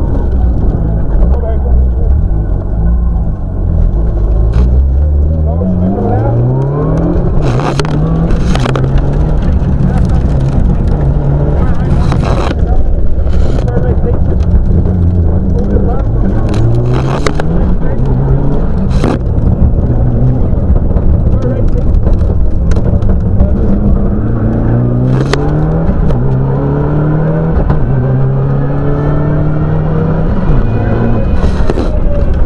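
Mitsubishi Lancer Evolution's turbocharged four-cylinder engine heard from inside the cabin, revving hard under acceleration. Its pitch climbs and drops back again and again as it shifts through the gears, with several sharp cracks along the way.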